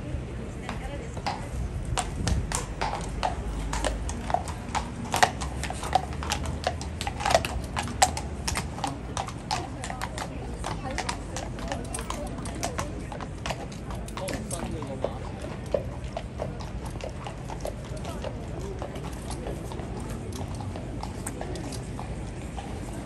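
Shod horses walking on cobblestones and paving, a run of sharp clip-clop hoofbeats that is loudest and thickest in the first half and thins out after about fourteen seconds as the horses move away.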